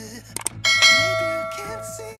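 Subscribe-button sound effect: two quick mouse clicks, then a bell ding that rings on and slowly fades.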